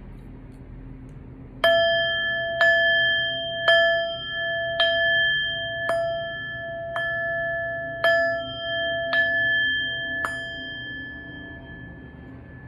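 Small Tibetan heart chakra singing bowl, held on the palm and struck with a wooden mallet nine times, about once a second. Each strike rings with several tones at once, the rings overlap, and they fade out after the last strike.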